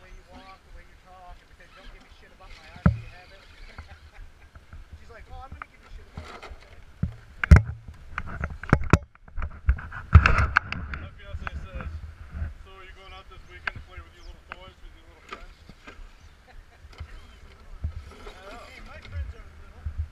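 Scale RC rock crawler trucks climbing bare rock: scattered knocks and scrapes of tyres and chassis against the rock, with the sharpest cluster a little before the middle.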